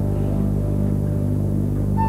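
Symphony orchestra strings holding a soft, sustained low chord, with no melody line above it.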